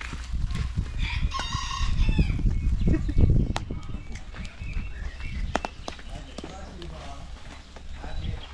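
A rooster crows once, about a second and a half in, over a steady low rumble and a few sharp clicks.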